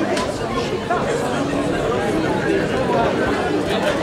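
Crowd chatter: many people talking at once, their voices overlapping into an indistinct babble.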